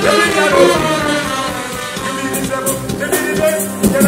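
Live band music with trumpets playing held notes over a steady beat.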